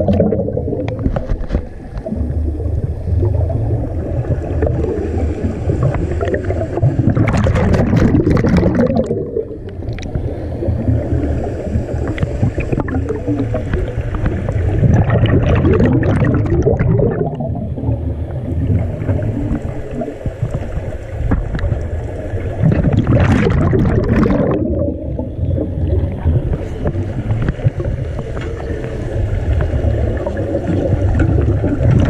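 Scuba diver breathing through a regulator, heard underwater: three loud bursts of bubbling exhaust about every eight seconds, over a steady low rumble.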